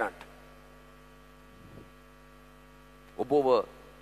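Steady electrical mains hum from the amplified sound system, several even tones held through a pause, with a man's amplified voice briefly at the start and again about three seconds in.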